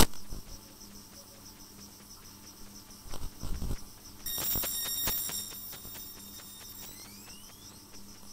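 Experimental electronic sound-art music: a sharp click, scattered soft clicks and a low thump over a faint hum. Just after four seconds a cluster of steady high-pitched tones comes in, like chirping insects, and near the end the tones glide upward.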